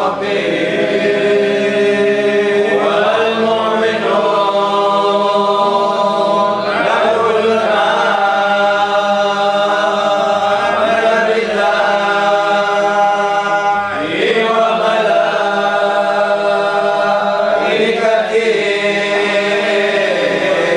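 A group of voices chanting Qadiri dhikr together in long, drawn-out notes that swoop to a new pitch every few seconds over a steady low held note.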